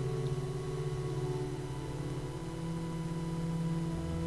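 Organ playing softly in sustained held chords, moving to a new chord about two and a half seconds in.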